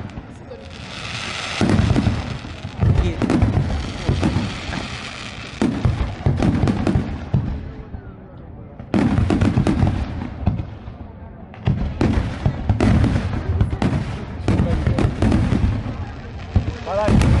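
Aerial fireworks display: a dense run of bangs and crackling shell bursts, easing off briefly twice near the middle before building up again.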